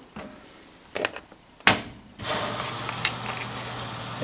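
Washing machine's control dial clicking as it is set, then a sharp clack as the knob is pulled out to start the cycle, and about two seconds in water begins rushing steadily into the tub.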